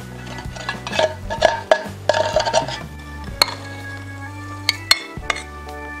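A metal spoon scraping and clinking inside a tin can of coconut milk and against a ceramic bowl, in scattered sharp clicks, over steady background music.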